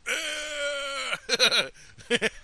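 A long, drawn-out cat-like yowling cry that holds one pitch and sags slightly for about a second, followed by a few quick laughing bursts.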